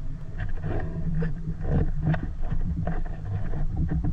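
Muffled underwater sound: a steady low rumble of water with many irregular small clicks and knocks.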